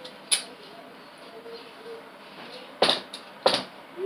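Short sharp knocks from handling: one click about a third of a second in, then two louder knocks about half a second apart near the end, over faint room tone.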